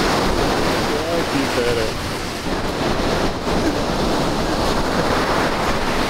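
Heavy ocean surf breaking and washing up the beach in a continuous loud rush.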